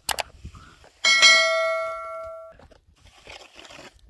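A sharp click, then about a second later a bright bell chime that rings on for about a second and a half before cutting off abruptly: the sound effect of an on-screen subscribe-button animation.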